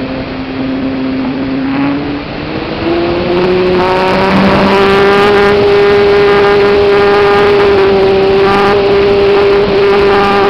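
RC model plane's motor heard from the onboard camera, a steady whine with wind rush over the microphone; the pitch climbs between about two and four seconds in as the throttle opens, then holds.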